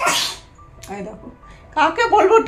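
A short, breathy burst close to the microphone, a sharp breath by the woman holding the camera, followed by a quiet pause; she begins speaking near the end.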